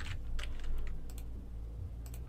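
Computer keyboard keys clicking a few times, short separate strokes with gaps between them.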